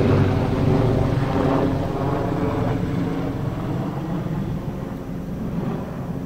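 A passing engine drones steadily and slowly fades away.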